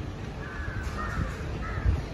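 A few short bird calls, caw-like, in quick succession over a steady low outdoor rumble, with a brief low thump near the end.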